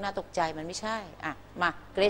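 A woman speaking in short phrases with pauses between them.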